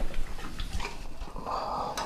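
A large pig snuffling in its pen, with a few small scuffs and knocks as it is handled.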